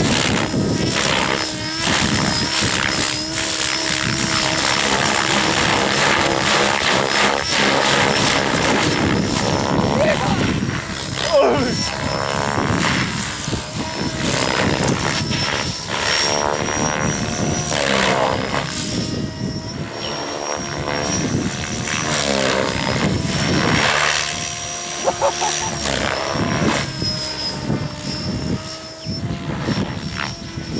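Radio-controlled helicopter in aerobatic flight: rotor blades and motor whining, the pitch and loudness sweeping up and down as it flips and swoops, over a steady high whine.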